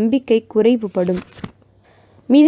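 Speech only: a narrator speaking in Tamil, breaking off about one and a half seconds in for a short pause.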